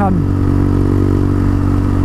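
Quad bike engine running steadily while cruising on the road, its pitch holding even with no change in speed.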